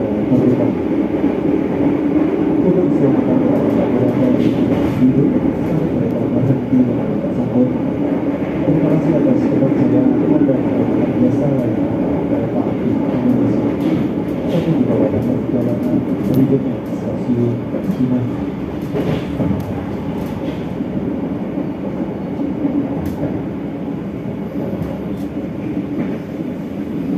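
Steady running rumble of the Argo Parahyangan passenger train's wheels on the rails, heard from inside the coach, with faint scattered clicks. It eases slightly about two-thirds of the way through.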